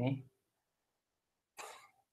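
A man's single short cough about one and a half seconds in, after the last word of his speech trails off into silence.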